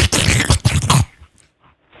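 Wet mouth noises, slurping and lip smacks, made close to a studio microphone to fake oral sex. They stop about a second in, leaving near silence.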